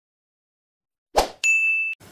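Subscribe-button animation sound effects: a brief swish of noise a little over a second in, then a bright bell-notification ding that rings for about half a second and cuts off abruptly.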